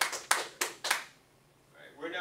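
Hand clapping: a short run of sharp claps, about three a second, that stops about a second in.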